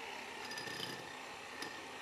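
Faint outdoor background noise, with a thin steady high tone and a light tick or two.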